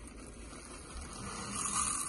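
Faint, soft sounds of hands working cornstarch slime in a glass bowl. Near the end a brighter hiss builds as sparkles are poured into the bowl.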